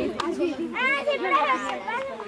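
Children's voices chattering and calling out, with a higher-pitched call from a little under a second in until near the end.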